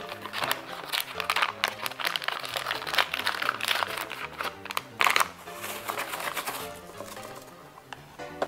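Paper packet of cornbread mix being torn open and crinkled by hand, a run of sharp crackles, over soft background music.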